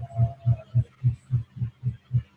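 A low hum pulsing evenly about five times a second, with a faint thin tone in the first half.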